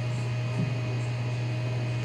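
Steady low hum under an even hiss of room noise, with no other event standing out.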